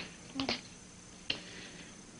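Quiet room tone broken by a short, soft vocal sound about half a second in and a single sharp click about a second later.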